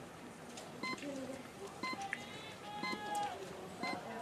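Electronic start-clock countdown beeps at a biathlon start: four short, high beeps a second apart, over background voices.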